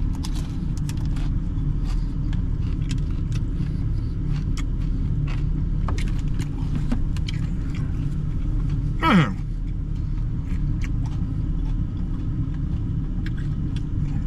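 Pickup truck's engine idling steadily, heard from inside the cab, with scattered small clicks and crunches of eating and handling plastic food containers. About nine seconds in there is one brief squeak that slides sharply up and back down.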